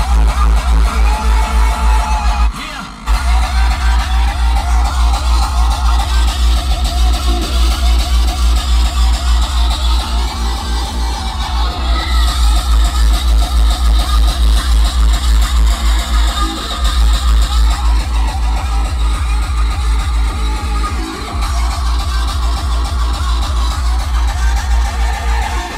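Uptempo hardcore electronic music with a fast, heavy bass kick, played loud through a Gladen car audio system and picked up inside the car's cabin by a phone's microphone. The kick drops out briefly about two and a half seconds in, then returns.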